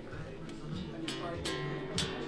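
Solid-body electric guitar strummed a few times, the chords ringing on between strokes. The player is unsure what tuning it is in and thinks it probably needs a tweak.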